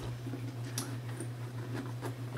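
A few light clicks and handling noises from a handbag and a bag organizer being worked into it, over a steady low hum.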